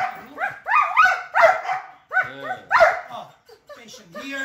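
Belgian Malinois barking in a quick run of short, sharp barks, about two or three a second, with a brief pause about two seconds in.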